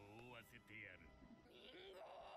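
Faint voices from a subtitled anime episode: a man's voice speaking in a wavering tone, then another voice shouting "Mingo!" near the end.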